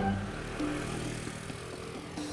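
Soft background music over the low, steady running of a motor scooter's engine at idle; the engine hum drops away about a second in.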